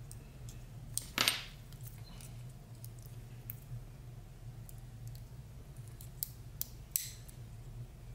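Sharp clicks and light scraping as the plastic casing is picked and peeled off a laptop CMOS coin-cell battery, the loudest snap about a second in and another near the end. A steady low hum runs underneath.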